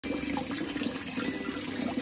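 A large long-finned tilapia (nila kumpay) thrashing in a landing net at the water's surface, splashing and churning the water steadily.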